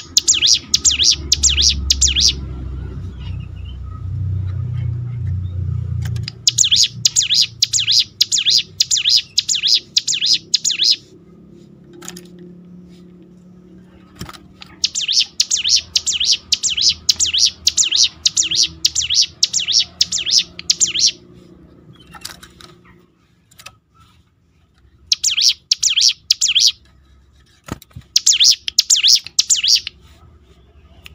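Caged prinia (ciblek gunung) singing in bouts of fast, high, repeated notes. Each bout lasts a few seconds and is set apart from the next by a short pause, about five bouts in all. A low rumble runs under the first few seconds.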